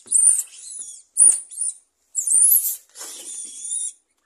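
Squeaky toy ball giving a series of short, high-pitched squeaks that bend in pitch, about five in all, the last one drawn out near the end.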